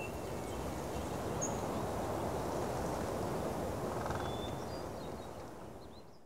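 Rural outdoor ambience: a steady low rush with a few faint, short bird chirps, fading out near the end.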